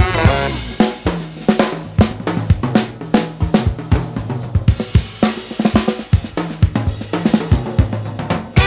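Funk drum break on a full drum kit: busy snare, kick, hi-hat and cymbal hits with electric bass underneath. The horns fade out just at the start.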